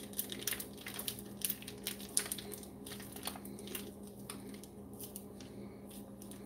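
Plastic piping bag crinkling in scattered small clicks as it is squeezed and twisted by hand to work the cream cheese filling down toward the tip, over a steady low hum.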